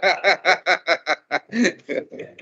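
A person laughing: a run of short chuckles, about five a second, fading toward the end.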